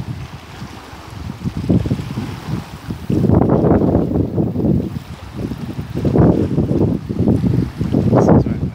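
Wind buffeting a phone's microphone in rumbling gusts, heaviest from about three seconds in and again near the end.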